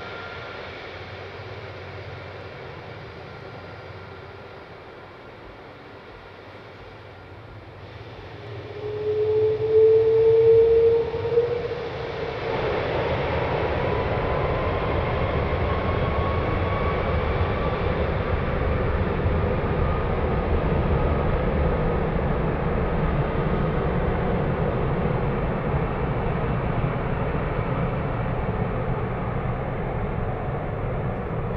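Airbus A330 jet engines spooling up for takeoff. A quieter taxiing whine comes first. About eight seconds in, a strong rising whine sets in, and from about twelve seconds the engines run loud and steady at takeoff thrust, with a slowly rising higher whine, as the jet rolls down the runway.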